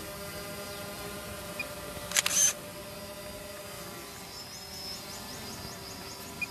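Steady outdoor hum and low background noise around a gathered crowd. One short, sharp click-like burst comes about two seconds in, and a quick run of faint high chirps follows near the end.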